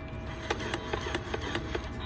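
Irregular clicks and light knocks, a few a second, from a boxed plastic toy truck and its cardboard packaging being handled.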